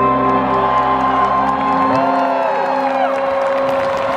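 Live rock band's final chord ringing out, the bass end dropping away about halfway through, while the crowd cheers and whoops.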